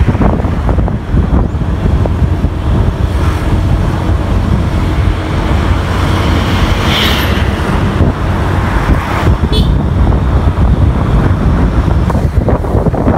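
Steady low rumble of a moving vehicle driving along a road, engine and road noise. A brief higher-pitched sound comes about seven seconds in, and a short run of high pips follows a couple of seconds later.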